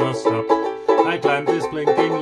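Magic Fluke Firefly concert banjo ukulele strummed in a steady chord rhythm, a down-down-up-up-down-up pattern in the key of C.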